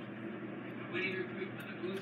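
Faint, indistinct voices talking in the background over a steady low room hum; the feeding snake itself makes no sound that stands out.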